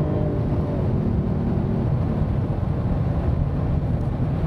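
Jaguar F-Type's supercharged 3.0-litre V6 under throttle, heard from inside the cabin. Its note drops in pitch about a second in and gives way to a steady low drone of engine and road noise.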